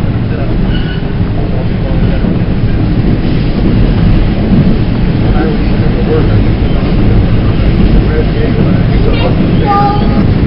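Subway train running through a tunnel, heard from inside the car: a loud, steady rumble of wheels on rail that grows slightly louder toward the end.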